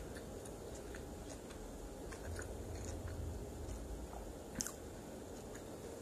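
Close-miked chewing of a mouthful of corn dog: soft, moist mouth clicks and crunches, with one sharper click near the end.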